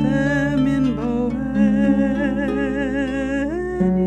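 A woman's voice singing long wordless notes with vibrato over sustained Celtic harp notes. The voice ends about three and a half seconds in, leaving the harp alone.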